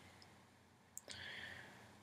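Near silence with one faint computer click about a second in, followed by a faint hiss.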